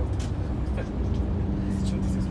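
Steady low rumble of a coach bus's engine inside the passenger cabin, with a steady hum coming in about a second in.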